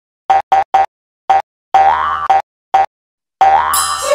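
Cartoon intro sting: a run of short, bouncy pitched notes, three quick ones and then single ones spaced out, two of them longer and sliding upward like a boing. A bright, sparkly shimmer comes in just before the end as the logo appears.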